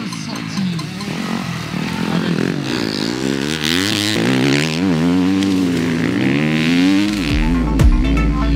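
Enduro motorcycle engines revving hard under acceleration, the pitch rising and falling repeatedly, over background music. Near the end a deep falling sweep in the music drops into a heavy bass note.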